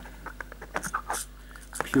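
Light, irregular clicks and rattles from the plastic spider droid toy being handled and its wind-up mechanism worked by hand.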